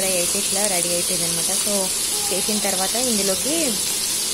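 Fish steaks frying in oil in a shallow pan, a steady sizzle under a voice talking.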